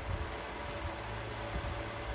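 Steady low background hum with a faint hiss: room noise in a pause between spoken sentences.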